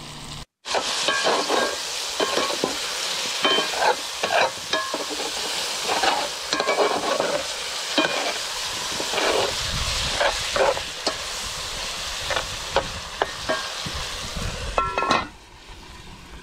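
Seasoned meat frying and sizzling in an aluminium pot over a wood fire, stirred with a long metal spoon that scrapes and clicks against the pot. Near the end the sizzling drops away after a few ringing metallic clinks.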